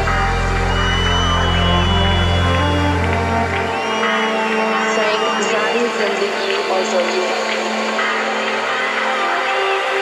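Live organic house music played by a band on stage. The deep bass line drops out about four seconds in, leaving the higher instruments playing on.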